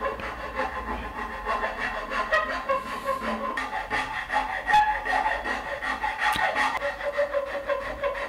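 A hand file scraping across the edge of a padauk guitar headstock faced with ebony veneer, in many quick, uneven strokes, shaping the end of the headstock by hand.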